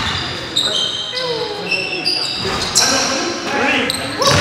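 Live basketball play in an echoing gym: sneakers squeaking in short, high squeals on the hardwood floor, with the ball bouncing and players' voices calling out.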